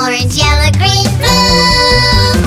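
Children's song: a young voice sings the colour names "red, orange, yellow, green, blue" over a backing track, holding a long note in the second half.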